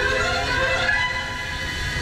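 Show soundtrack over loudspeakers: several held tones sound together like a horn chord, easing off a little near the end.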